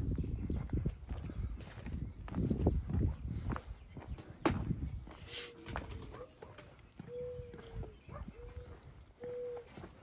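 Footsteps on a concrete walkway and handling of the phone while walking, with irregular thuds and clicks, and about halfway through a series of four or five short, steady low tones.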